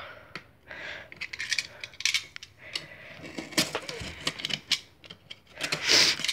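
A box cutter working at the packing tape on a cardboard shipping box: irregular scrapes, clicks and taps as the box is handled, louder about three and a half seconds in and near the end.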